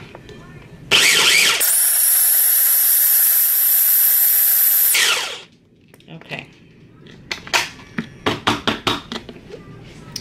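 Small electric food processor running for about four seconds as it grinds chopped strawberries into a purée, starting about a second in and winding down. It is followed by a run of light plastic clicks and knocks from the bowl and lid being handled.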